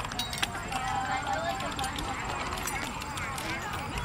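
Many light clicks and rattles from movement along a paved path, over faint distant voices.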